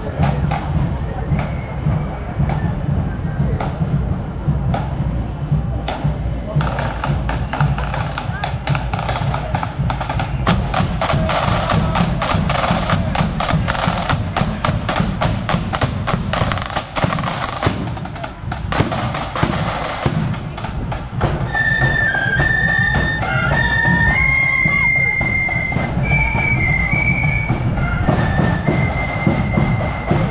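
Marching band snare and bass drums. A steady beat at first, then about six seconds in, loud rapid snare drumming with rolls. In the last third, high flutes join with a tune over the drums.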